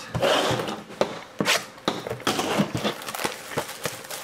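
Sealed cardboard trading-card box being unwrapped and opened by hand: plastic wrap crinkling and tearing for about the first second, then a quick run of sharp clicks, taps and scrapes of cardboard being handled.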